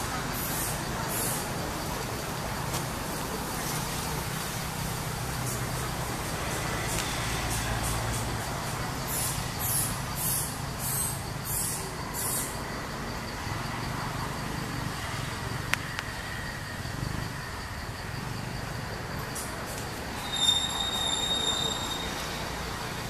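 Steady outdoor background noise with a low rumble like distant traffic, with bursts of high hissing now and then and a brief high tone near the end.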